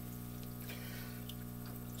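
Steady hum of aquarium aeration with water bubbling and trickling as air stones send bubble curtains up through the tank.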